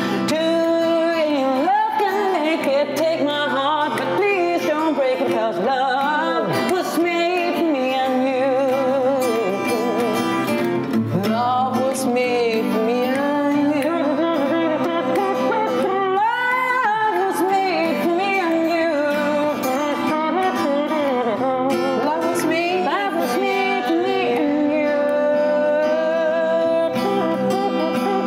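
A woman singing a melodic line with vibrato over a steadily strummed acoustic guitar, played live as a voice-and-guitar duo.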